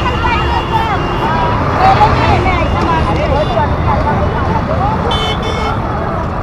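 Busy night street: the chatter of many voices over a constant rumble of traffic, with vehicle horns sounding, one held into the first second and a short toot about five seconds in.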